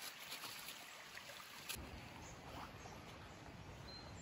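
Faint, steady rush of a shallow stream running over stones, with a single sharp click a little under two seconds in.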